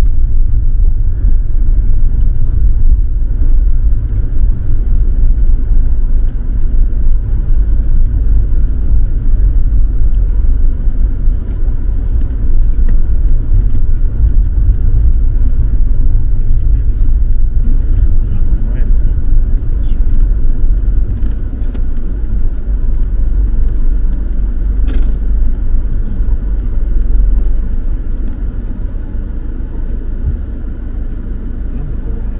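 Car driving on an unpaved dirt road, heard from inside the cabin: a loud, steady low rumble from the tyres and running gear, with a few small rattles and clicks, easing a little near the end.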